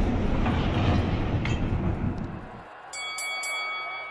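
The long, noisy rumble of a meteor's airburst boom, fading away over about three seconds. It then gives way to a quieter, steady high ringing tone with a pulsing edge.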